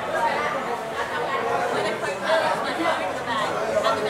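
Several people talking at once: indistinct background chatter.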